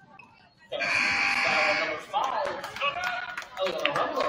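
Gym scoreboard buzzer sounds once, a steady harsh tone lasting just over a second, starting under a second in. Shouting voices in the gym follow it.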